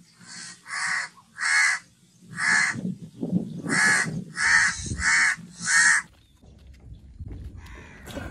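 A bird calling repeatedly: about nine short calls spaced roughly half a second to a second apart, stopping about six seconds in.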